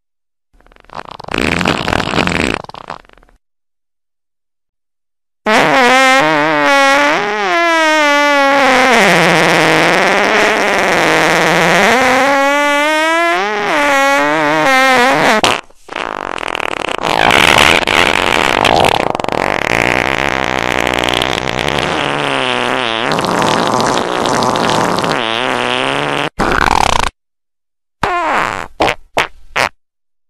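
Fart sounds edited together as a remix. There is a short fart early, then a long wavering pitched one lasting about ten seconds, then another long, rougher one, and a few quick short blasts near the end.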